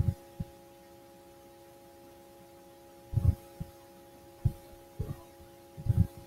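Faint steady electrical hum on the microphone, with a few soft low thumps: one at the start, a pair about three seconds in, and several scattered near the end.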